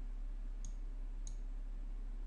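Two faint computer mouse clicks about two-thirds of a second apart, over a low steady hum.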